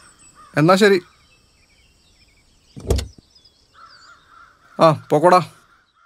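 A crow cawing twice near the end, with a single thump about three seconds in and faint chirping birds.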